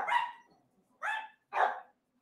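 Dogs barking: three short barks, at the start, about a second in and about a second and a half in. The dogs are set off by a food delivery at the door.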